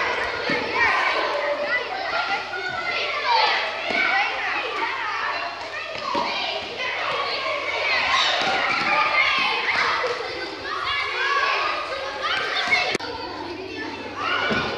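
Many children's voices overlapping, calling and chattering, echoing in a large sports hall, with a few short knocks among them.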